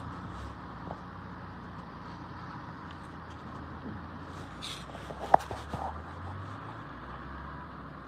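Car engine idling close by, a steady low rumble that fades about six and a half seconds in. A single sharp click just after five seconds is the loudest sound.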